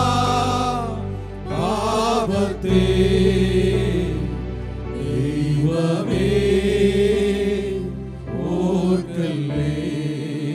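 Men's choir singing a Malayalam Christian hymn in long held phrases, with keyboard, bass guitar and electronic drum pad accompaniment.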